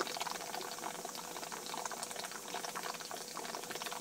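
A 10 L copper alembic at the boil: a steady, dense crackle of bubbling water.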